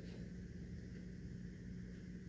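Quiet indoor room tone with a faint steady low hum.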